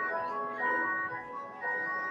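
Church organ playing a soft passage, a slow line of high held notes.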